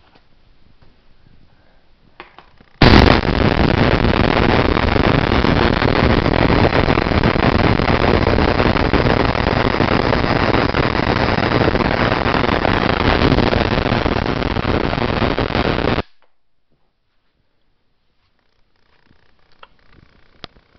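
Spark gap driven by a 10 kV transformer firing continuously: a loud, harsh, rapid crackling buzz that starts suddenly about three seconds in and cuts off abruptly some thirteen seconds later.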